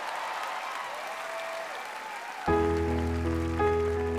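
Studio audience applause and cheering, then about two and a half seconds in a grand piano starts playing sustained chords with deep bass notes.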